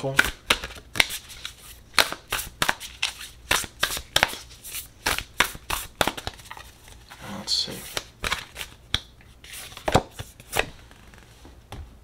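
A deck of oracle cards shuffled by hand, a fast, uneven run of crisp card snaps and flicks that stops about a second before the end.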